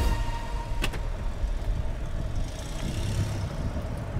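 Steady low rumble of a running vehicle or traffic, with a single short click about a second in.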